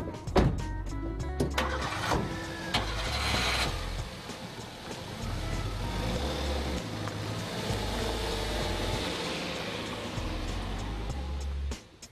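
Car doors shut with sharp knocks, then the engine of a Jinbei mini truck starts and runs steadily, with background music underneath.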